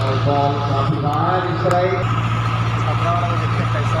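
A steady low mechanical drone, like an idling engine, with voices calling out over it in the first two seconds.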